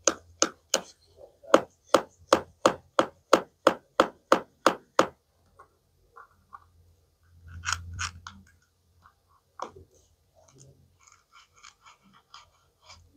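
Plastic toy knife tapping on a plastic toy apple and cutting board: sharp clicks about three a second for five seconds. Later comes a brief clatter of the plastic pieces being handled, then a few faint ticks.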